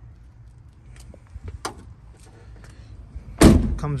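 A few faint clicks and knocks, then a Jeep Wrangler's rear swing gate slamming shut about three and a half seconds in, the loudest sound, with a short deep thud.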